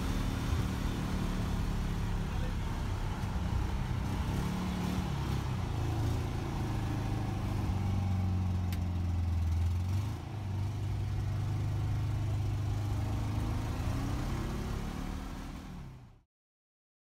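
Snow Trac tracked snow vehicle's Volkswagen engine running under way, its note rising and falling a few times as it drives. It dips about ten seconds in and fades out at the end.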